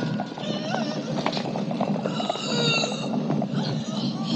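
Horses' hooves clopping and shuffling on a stone floor as a mounted troop moves off, mixed with a film score of wavering high tones.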